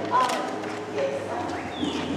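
Faint, indistinct voices with a few light knocks, and a short high falling whistle near the end.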